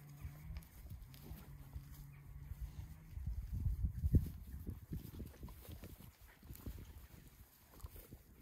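Manx Loaghtan sheep and a Kelpie dog close together on grass. A faint low rumbling tone lasts about three seconds, then comes a run of soft low thumps and rustling as the animals move, loudest around the middle.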